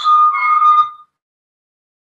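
A steady high whistle-like tone over a muffled background, cutting off abruptly about a second in and leaving dead silence.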